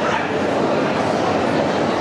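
A dog barking over the steady crowd hubbub of a large indoor show hall.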